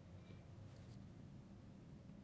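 Near silence: faint strokes of a marker writing on a glass lightboard over a low steady room hum.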